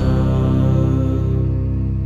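Closing chord on electric guitar and bass, struck once at the start and left to ring as one steady held chord. It slowly fades, the high overtones dying away first.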